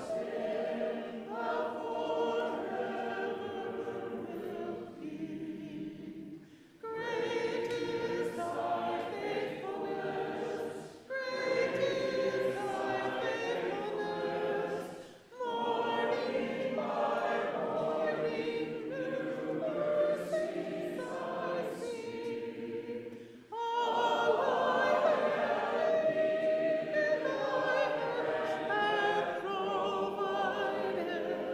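Congregation singing a hymn together in long sung lines, with short breaks between phrases.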